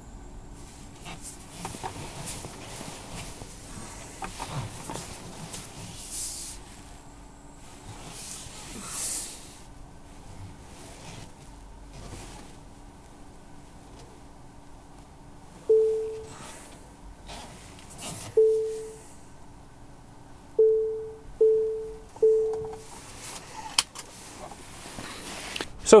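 Tesla Model 3 park-assist chime: five short beeps at one pitch, each with a sharp start and a short fade, coming in the second half and closer together as the car nears an obstacle while reversing into a bay.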